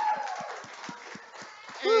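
Light, irregular footsteps thumping on a hollow floor, a few a second, under a faint murmur from the hall.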